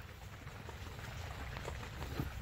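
Faint crumbling and rustling of loose potting soil as a hand digs into it, with scattered small ticks over a low rumble.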